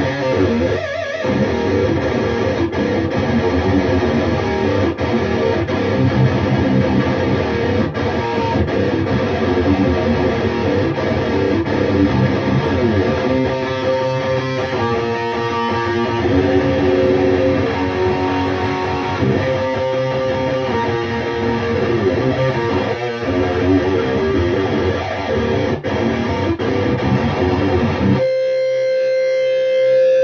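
Electric guitar played through a Bugera 6262 tube amp head and speaker cabinet, with the amp's resonance control raised by a mod to about 10 or 11 o'clock. It plays riffs and chords, then a held chord rings out near the end.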